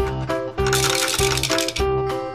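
Small plastic balls rattling down a toy chute into a plastic dump bin for about a second, over background music with a steady beat.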